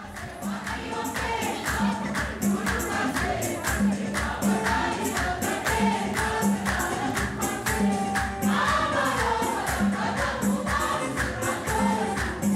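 Choir singing a hymn to a steady beat of drum and jingling percussion.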